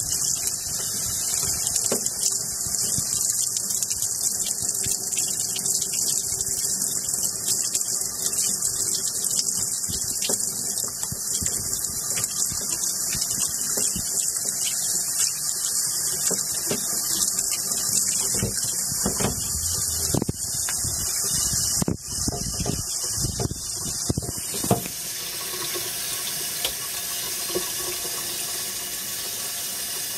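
Water spraying steadily from a hand-held shower head onto a small dog's wet coat in a tub, with a few knocks and splashes from handling around twenty seconds in. About 25 seconds in, the spray's sound changes and becomes a little quieter.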